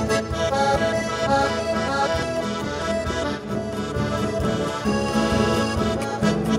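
Chromatic button accordion playing a chamamé tune in full, sustained chords, with guitarrón and light percussion accompaniment.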